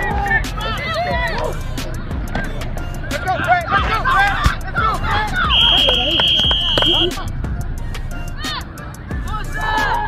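Sideline voices shouting and cheering during a football play, with a referee's whistle blown once in a steady, high tone for about a second and a half, about five and a half seconds in, as the ball carrier is tackled and the play is stopped.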